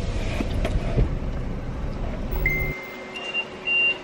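Car idling, heard from inside the cabin with the driver's window open: a low rumble that cuts off abruptly near the end. A thin, steady high electronic tone sounds in the last second and a half and steps up once in pitch.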